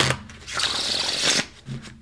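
A deck of tarot cards being shuffled by hand. A papery rush of cards sliding together begins about half a second in and lasts about a second.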